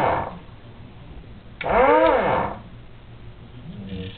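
Dumore 20-011 automatic precision drill running through its automatic cycle: the motor's whine rises and falls in pitch within under a second, once about one and a half seconds in, with the end of the previous cycle dying away at the very start.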